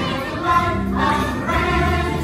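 A large stage ensemble singing together in chorus, mixed voices holding long notes.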